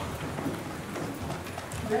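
Shuffling and footsteps of a congregation getting to their feet and walking forward, with scattered low knocks.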